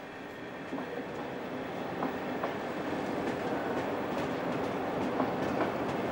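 Intercity passenger train rolling slowly along the adjacent platform track, its wheels clicking irregularly over rail joints and points, growing steadily louder.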